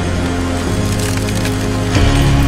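Dramatic film score with a cracking, splintering effect of ice forming and breaking, strongest about a second in.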